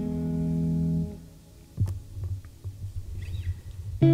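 Electric guitar, a Stratocaster-type, holding a ringing chord that dies away about a second in. A quieter stretch follows with a few low plucked thumps and small clicks before the song comes back in.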